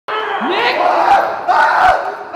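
Loud yelling voices: a drawn-out cry that rises in pitch about half a second in, then a second burst of shouting near the end.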